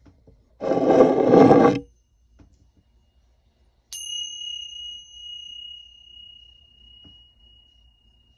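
A loud rubbing, rustling noise for about a second, then a small meditation bell struck once about four seconds in, ringing with a clear high tone that slowly fades.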